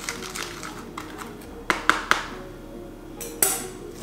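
A fork stirring seasoned flour in a plastic container, making a few sharp, scattered clicks and scrapes against the container.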